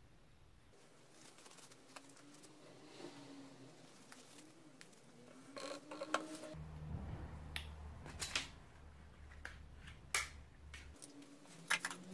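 A plastic battery-acid container is handled with rubber-gloved hands and set down on a table: quiet rustling with a few sharp light clicks and knocks, the clearest in the second half.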